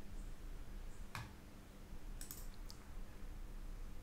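A few computer mouse clicks: one about a second in, a quick cluster a little after two seconds, and one more just after, over a faint steady low hum.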